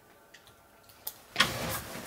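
Quiet room tone for about a second, then a click and a sudden loud scuffing, rustling noise from a person moving through debris.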